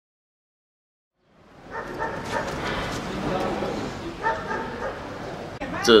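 Silence for about a second and a half, then busy background sound with people's voices fades in; a man's voice starts speaking just before the end.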